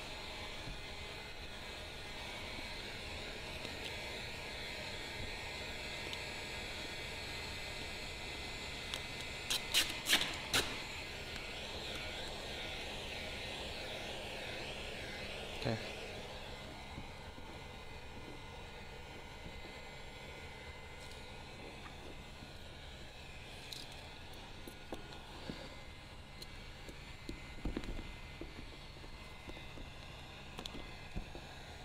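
Handheld electric heat gun blowing steadily while it warms vinyl wrap film, with a few sharp clicks about ten seconds in.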